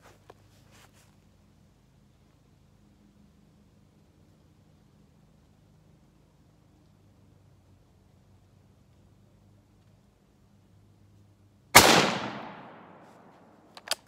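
A single shot from a Rock Island Arsenal M1903 bolt-action rifle in .30-06, about twelve seconds in, after a long near-silent stretch. Its report dies away over about two seconds.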